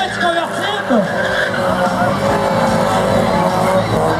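Car engine held at high revs while the rear tyres spin and squeal through a burnout.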